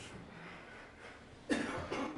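Quiet room tone, then about one and a half seconds in a man gives a short cough.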